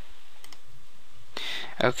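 A single faint computer mouse click over steady hiss, as a pop-up dialog is clicked closed; a man's voice starts near the end.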